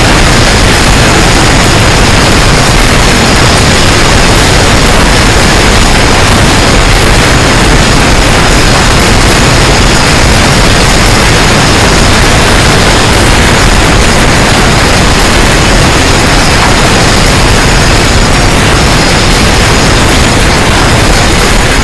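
Earthquake rumble sound effect: a very loud, steady wall of noise reaching from deep bass to a high hiss. It holds unchanged throughout, with no separate booms or impacts.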